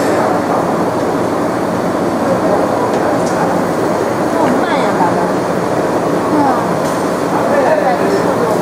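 Loud, steady machinery noise, like a workshop or factory floor, with indistinct voices faintly mixed in.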